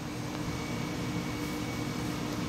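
Steady machine hum and hiss of room background noise, like a fan or air conditioner running, with a faint steady tone through it.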